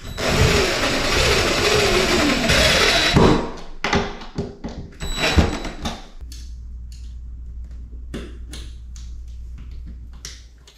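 Cordless impact driver driving a screw into a wall for about three seconds, its pitch wavering as it runs. A few knocks and clicks from handling the hardware follow, then a low steady hum from about six seconds in.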